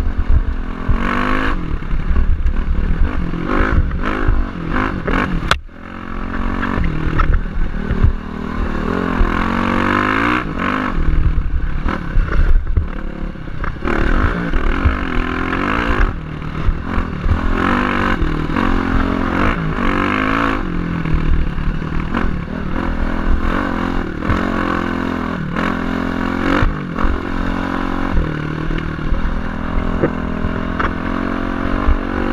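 Dirt bike engine heard from the rider's helmet, its pitch rising and falling as the throttle is opened and eased off, with a brief drop about five seconds in. Rattling clatter from the bike as it runs over bumps.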